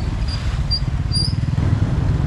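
Street ambience dominated by a steady low rumble of wind buffeting the microphone, with road traffic passing and a few short high chirps in the first second and a half.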